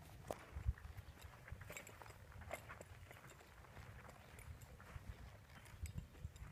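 Faint, irregular soft footfalls of a horse's hooves on dirt and hay as it steps around in a slow turn.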